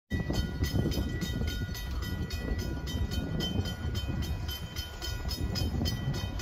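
Low rumble of an approaching Norfolk Southern freight train, with a rapid, regular ringing about four times a second over it.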